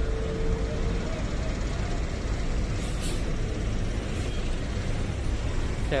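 Intercity coach bus engine running close by with a steady low rumble amid street traffic, with a brief high hiss about three seconds in.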